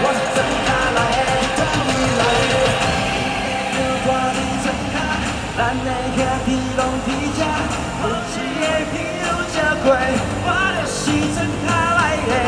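Live pop-rock music with singing, amplified through a stadium's sound system.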